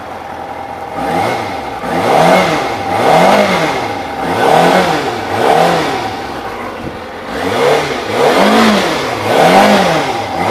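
2003 Kawasaki ZZR400's inline-four engine idling, then revved in a series of quick throttle blips, about one a second, each rising and dropping back toward idle.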